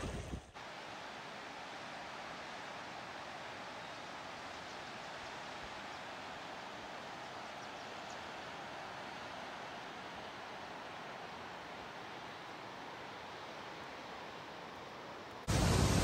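Distant whitewater creek in a canyon below: a steady, even rushing hiss that never rises or falls.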